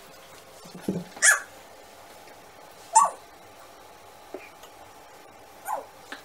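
Three short, sharp yelps a couple of seconds apart, with a fainter one between the last two.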